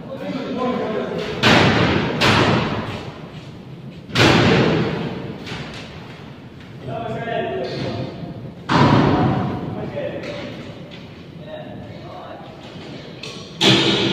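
Heavy wooden thuds, five in all, a few seconds apart and echoing in a large hall, as poles and boards knock against the hollow statue and its scaffolding. Voices talk between the thuds.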